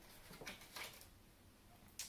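Near silence: room tone with two faint, brief rustles about half a second and a second in, from tarot cards being handled.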